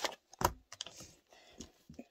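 Hair-dye packaging being handled on a table: a sharp knock about half a second in, then several lighter clicks and rustles as the box and a small tube are handled.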